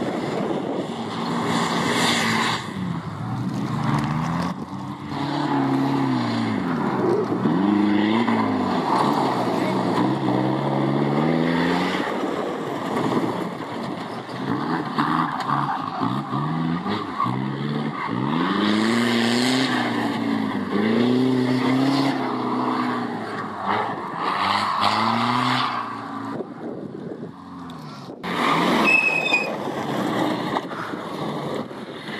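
Off-road 4x4 engines revving up and down again and again as the vehicles climb and drop over a dirt course, the pitch rising and falling in repeated swells.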